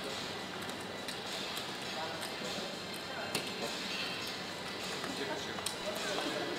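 Plastic casino chips clacking now and then as they are handled and stacked at a roulette table. A few sharp clicks sound over a steady background of indistinct voices.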